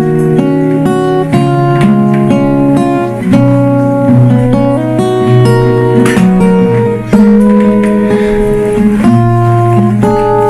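Acoustic guitars strummed and picked, playing the opening of a song with chords changing every second or so.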